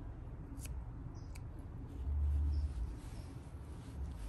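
Two sharp snips under a second apart from grooming scissors cutting the fur around a small dog's eye, then a brief low rumble about two seconds in.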